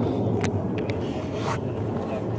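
Steady low rumble of outdoor background noise, with a few brief sharp clicks.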